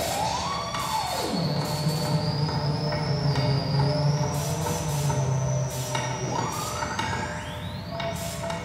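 Homemade object synthesizer in a wooden box, playing experimental electronic sound: a steady low drone under a high whistling tone, with a pitch that sweeps up and back down about a second in and climbs again near the end, over scattered crackles of noise.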